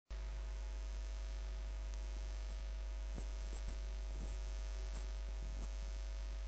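Steady low electrical hum with a few faint ticks.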